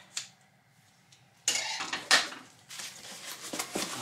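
Scissors and packaging being handled: a small click as the plastic cover is pushed onto the scissors, then about a second of cardboard and plastic rustling with a sharp clack about two seconds in as the scissors are put down on the wooden table.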